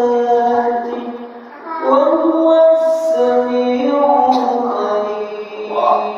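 A man's melodic Quran recitation (tilawah), long vowels held on steady pitches and turned with ornaments. There is a short breath pause about one and a half seconds in.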